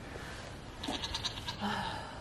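Bleating of a goat or sheep: a short pulsing call about a second in, then a second, steadier call near the end.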